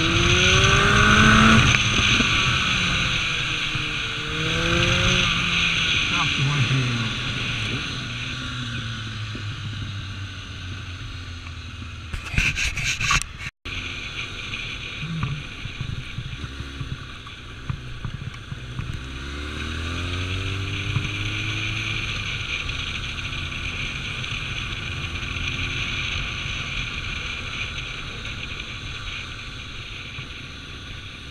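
Kawasaki ZRX1200 inline-four engine heard from the rider's seat, its pitch rising and falling as the bike accelerates and changes gear, over steady wind rush on the microphone. It is loudest at a rev in the first couple of seconds, and the sound cuts out for an instant about halfway through.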